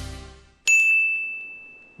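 Intro theme music fades out, then a single high chime dings about two-thirds of a second in and rings down slowly.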